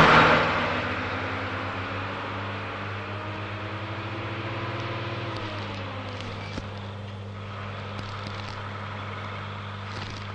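Bus engine running steadily, heard from inside the passenger cabin as a low hum. About five seconds in, its pitch eases down, and a few light knocks follow.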